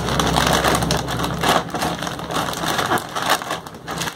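Thin plastic courier mailer bag crinkling and crackling as hands grip and twist it, a dense rustle that runs on without a break.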